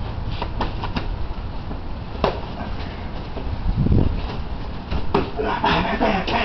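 A few sharp slaps, the clearest about two seconds in and another about five seconds in, and a dull thud near four seconds, over a steady low rumble. These are hands and forearms striking each other in a martial-arts trapping and punching drill.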